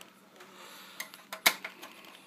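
A few sharp metallic clicks and knocks from hands working inside a steel PC case as the power supply is taken out, the loudest about halfway through.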